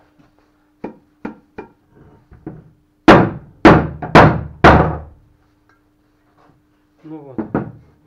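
Outboard lower-unit gearcase housing knocked against a wooden workbench four times, about two knocks a second, each with a short ringing tail, to jar a gear loose from its bearing race. Lighter clicks of metal parts being handled come before.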